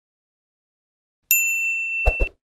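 Silence for the first second or so, then a single bright, bell-like ding strikes sharply and keeps ringing: a sound effect on a subscribe outro animation.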